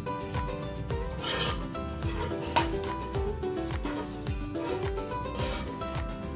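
Background music with a steady beat and a melody.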